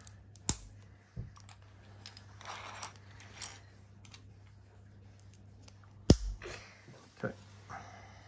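Small hard plastic LEGO pieces clicking and tapping as they are handled on a wooden tabletop and snapped onto a large red brick, a few separate clicks with the sharpest about six seconds in.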